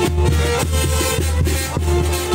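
Band music with a deep tuba bass line, a melody over it and a steady beat.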